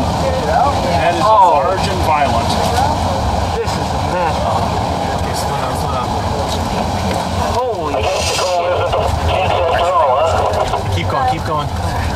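Steady road and engine noise inside a moving car, with indistinct voices talking over it now and then.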